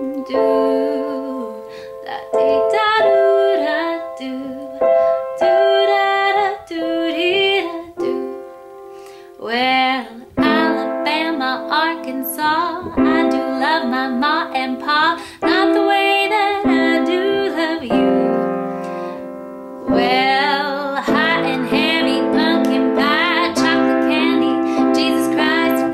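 A woman singing in phrases over her own simple piano accompaniment, part of an acoustic pop cover.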